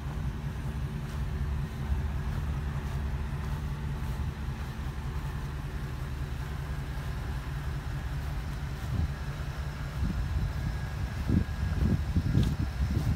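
Ford E-350 box truck's engine idling steadily. Gusts of wind buffet the microphone near the end.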